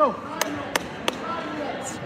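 Three sharp hand claps about a third of a second apart, with murmured voices echoing in the gym behind them.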